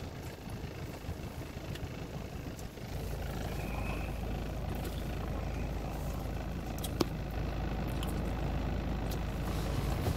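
Car engine idling, heard from inside the cabin as a steady low rumble that grows stronger about three seconds in. A single sharp click comes about seven seconds in.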